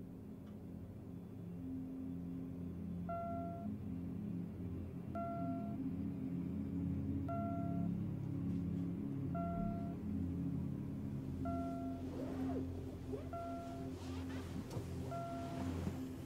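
Computer monitor's alert tone: a short electronic beep repeating about every two seconds, signalling a received message. A low droning music score swells underneath, and bedclothes rustle near the end.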